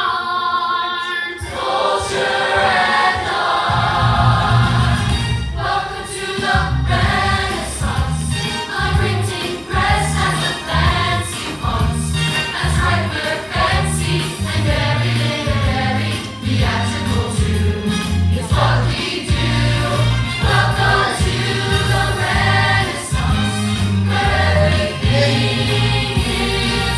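A musical-theatre ensemble number: group singing over a backing accompaniment, with a steady bass beat coming in about two seconds in.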